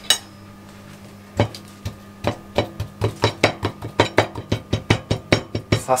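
A metal fork repeatedly stabbing a raw chicken breast, its tines tapping through the meat onto a wooden cutting board. The taps come faster from about two seconds in, about three or four a second, to tenderize the meat. A single metallic clink sounds at the very start.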